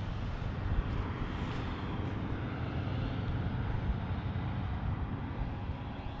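Steady wind noise on the camera microphone: a low, gusty rumble with an even hiss above it.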